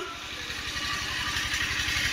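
An engine running at idle with an even low pulsing, growing slightly louder over the two seconds, under a steady hiss.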